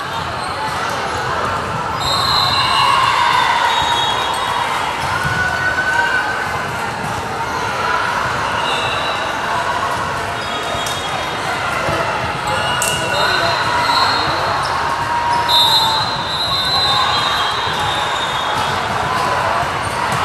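Volleyball gym ambience between rallies: a steady hubbub of players' and spectators' voices, with a ball being bounced on the hardwood court and a few short high squeaks.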